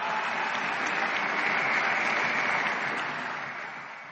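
Large audience applauding, swelling to a peak midway and then fading away.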